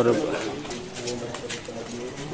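Men's voices talking in the background, fainter than the narration that just stopped, with a few faint clicks about a second in.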